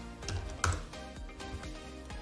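A few keystrokes on a computer keyboard, the clearest about two-thirds of a second in, over quiet background music.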